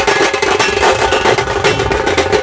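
Maharashtrian dhol-tasha band drumming: a dense stream of rapid stick strokes with a steady ringing tone, over deep beats from large barrel drums.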